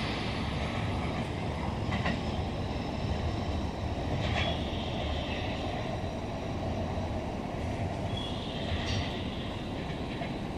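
Electric train running along the track as it moves away, a steady rumble with a few light clicks from the wheels.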